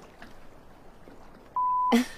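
Faint background noise, then near the end a short, steady, high-pitched censor bleep that cuts in and out abruptly, lasting about a third of a second.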